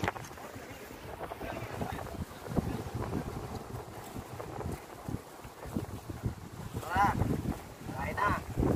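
Wind buffeting the microphone over the sound of surf on the shore, with a short voice about seven seconds in.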